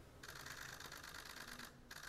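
Press photographers' camera shutters clicking in rapid, overlapping bursts, faint.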